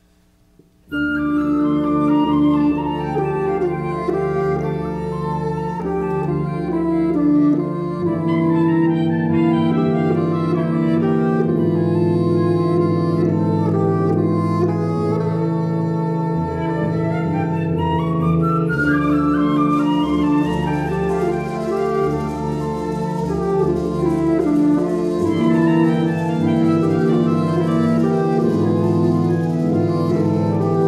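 Wind ensemble playing a Puerto Rican danza, music starting suddenly about a second in after near silence, with sustained low chords under moving woodwind and brass lines.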